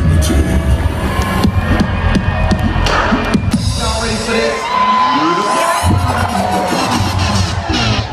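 Loud dance music over a concert PA with a crowd cheering and screaming. About four seconds in, the bass beat drops out for a couple of seconds under rising sweeps, then comes back in.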